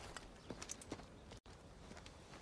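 Faint footsteps, a few soft scattered knocks over quiet outdoor ambience.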